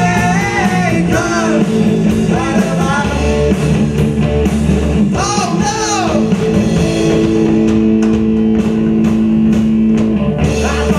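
A rock band playing live, with electric guitars and a drum kit. A sung line comes near the start and again about halfway through, and the band holds long notes through the last few seconds.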